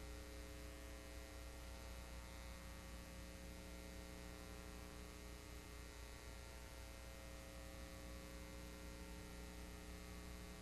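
Faint, steady electrical mains hum with a stack of overtones over a background hiss. No programme sound, just the noise of the recording chain in a blank stretch of tape.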